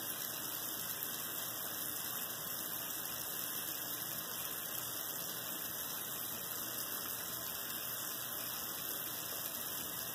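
Bathroom faucet left running into the sink: a steady, even hiss of water that does not change.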